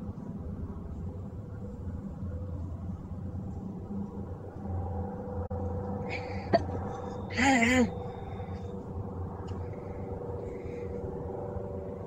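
Steady low rumble with a man stopping from chugging ice-cold beer out of a glass mug: a sharp click, then a short wavering vocal exclamation a little past halfway as the cold drink is too much to keep downing.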